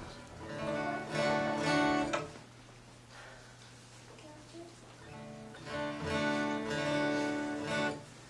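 Steel-string acoustic guitar strummed in two short passages of ringing chords, each lasting about two seconds, with a pause between them. A steady low hum sits underneath.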